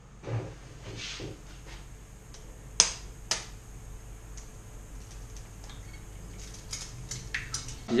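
Kitchen sounds at a gas stove while eggs are cracked into a frying pan: two sharp clicks about half a second apart, over a faint steady hiss.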